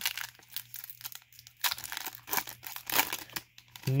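Plastic wrapper of a Pokémon trading card booster pack crinkling and tearing as it is ripped open by hand, a dense run of crackles, loudest around the middle.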